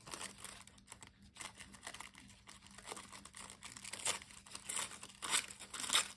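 Thin spray-dyed tissue paper being torn by hand, a string of short, irregular rips and crinkles that grow louder and more frequent near the end.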